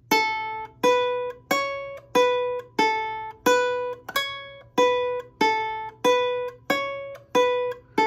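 Ukulele played one note at a time on its first (A) string, the open string and a few fretted notes, picking out a short interlude riff. About thirteen evenly spaced plucks, roughly one every two-thirds of a second, each ringing briefly before the next.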